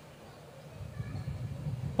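A pause in speech: faint low background noise of a hall full of seated people, growing slightly louder toward the end.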